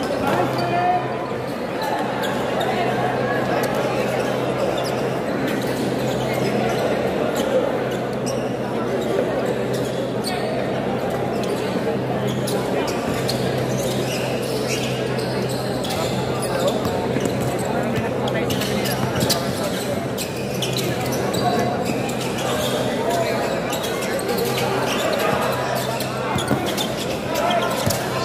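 Basketball bouncing on a hardwood court during live play, with many knocks over a constant din of crowd voices in a large, echoing gym. A steady low hum runs underneath.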